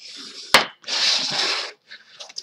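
A sharp tap, then about a second of firm rubbing as a burnishing tool smooths a freshly laid strip of double-sided score tape down onto chipboard.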